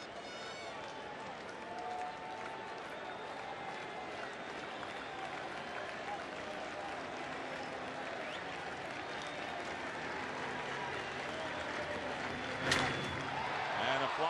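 Ballpark crowd noise, a steady murmur and applause that builds slightly. Near the end comes a single sharp crack of the bat as the batter lifts a fly ball to center field.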